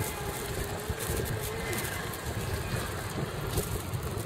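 Wind buffeting the microphone in an irregular low rumble, over street background with a vehicle engine running.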